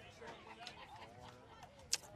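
Low outdoor background at a ballfield between pitches, with faint wavering calls in the middle and one short, sharp click just before the end.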